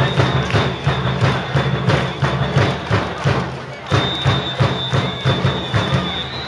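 Organised baseball cheering: a crowd chanting to a steady beat of about four strikes a second, with a high steady whistle-like tone held from about four seconds in.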